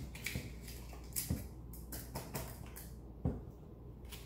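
A few soft knocks and scrapes of a whisk working muffin batter in a stainless steel mixing bowl, over a low steady room hum.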